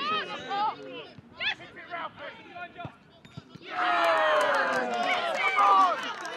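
Scattered shouts from players on a football pitch, then, a little over halfway through, a sudden loud burst of many voices cheering and yelling as a goal goes in.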